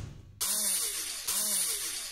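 Sound-effect sting for an animated logo: a hissing whoosh fading out, then two hissing swooshes about a second apart, each carrying a tone that rises and falls.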